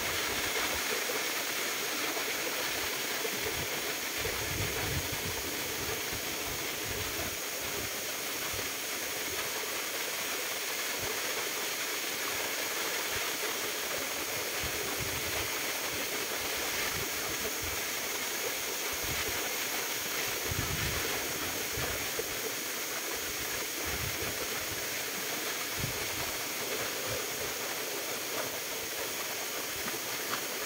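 Steady rushing of a waterfall and the shallow stream below it, an even hiss of falling water with a few brief low rumbles on the microphone.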